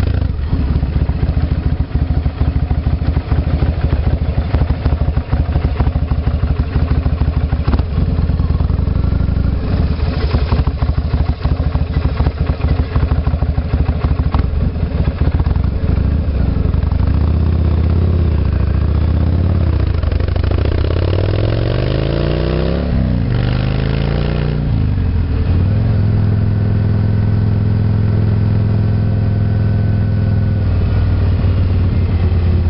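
Motorcycle engine running under the rider, with choppy wind buffeting on the bike-mounted microphone through the first half. From about 17 seconds in the engine pulls up in pitch as the bike accelerates, drops back at a gear change, then holds a steady cruise.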